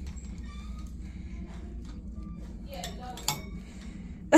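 A wand toy's rod clinking lightly against a wire kennel's metal bars, with a sharper click near the end, over a steady low room hum.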